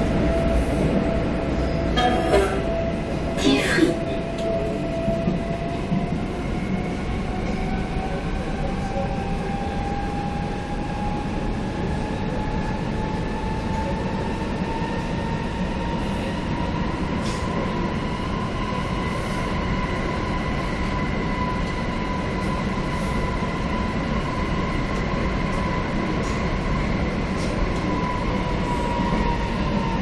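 CAF Boa metro train running through a tunnel, heard from inside the car: a steady rumble of wheels on the track with the electric traction motors' whine rising in pitch as the train gathers speed, holding steady, then starting to fall near the end. A few sharp clacks come in the first four seconds.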